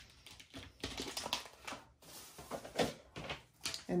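Hands handling a burlap wreath and craft materials on a table: an irregular string of light clicks, taps and rustles.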